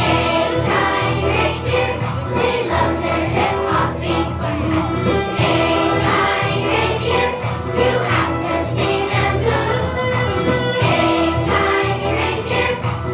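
A children's choir singing a holiday song in unison over musical accompaniment with a steady beat and bass.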